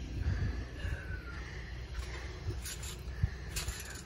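A trampoline mat giving several dull, low thuds as someone bounces on it to build height for a flip.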